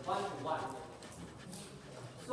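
Indistinct voices talking quietly, louder in the first second and then trailing off into the room's background.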